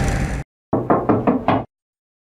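Knuckles knocking on a door: a quick series of about five knocks.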